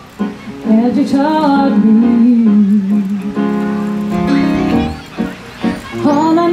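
A woman singing a slow, drawn-out melody with sliding, held notes, accompanied on a Yamaha S90 ES stage keyboard. The sound dips briefly between phrases about five seconds in.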